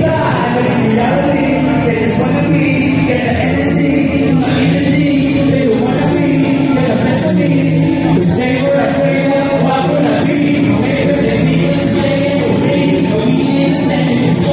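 Loud live music with vocals: a rapper performing a verse over a backing track, the voice and music steady and unbroken.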